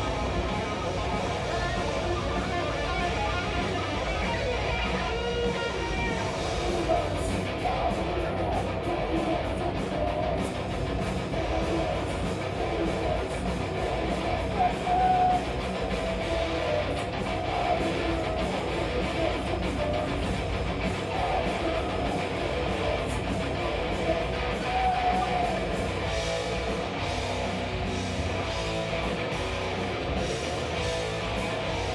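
Live heavy metal band playing: distorted electric guitar and bass guitar over drums, with fast, even drum and cymbal hits from about seven seconds in.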